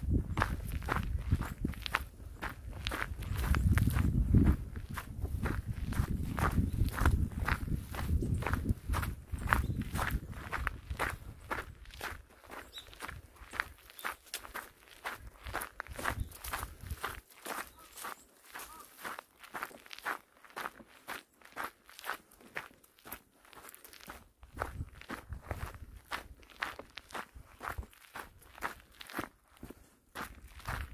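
Footsteps walking at a steady pace on a dirt forest path, about two crunching steps a second. A low rumble runs under the steps for the first twelve seconds or so, then fades.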